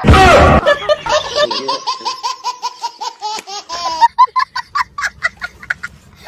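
A person laughing hard: a loud burst, then a long run of quick, high-pitched "ha-ha" pulses, trailing off into shorter breathy bursts in the last couple of seconds.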